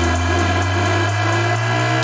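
Electronic dance music in a drumless breakdown: a sustained synth chord over a bass tone that slowly rises in pitch, with the beat coming back in right at the end.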